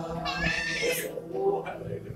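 Congregation voices in spontaneous worship, with one high, wavering cry from a single voice in the first second.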